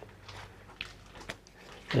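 Faint handling noise at a workbench: a few light clicks and taps as a steel mill's quill wheel and small parts are picked up.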